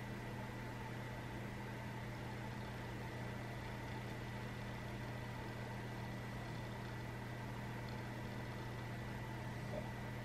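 Steady low hum with faint higher tones over a light hiss: room tone, unchanging throughout, with one small tick just before the end.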